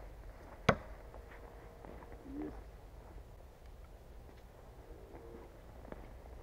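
A Cold Steel Perfect Balance Thrower, a heavy one-piece steel throwing knife, strikes a wooden log target and sticks, a single sharp thunk under a second in.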